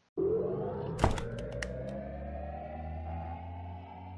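Synthesized outro sound effect: a low steady drone under a slowly rising tone, with a sharp hit about a second in followed by a few quick clicks.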